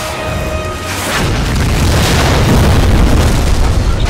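A patrol boat exploding in a film battle: a deep, rumbling blast begins about a second in and swells to its loudest near the end. Music plays underneath.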